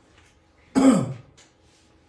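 A person clearing their throat once, about a second in: a short, rough sound that falls in pitch.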